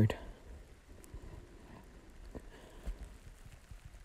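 Faint low rumble with a few soft, scattered knocks, heard from inside a car on a ferry's car deck.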